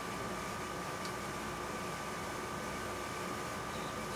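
Steady background hiss with a faint, thin, steady whine; no distinct sound event.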